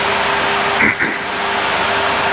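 Cockpit noise of the Super Guppy Turbine's four Allison 501 turboprop engines at takeoff power during the takeoff roll and rotation: a loud, steady noise with a constant tone running through it.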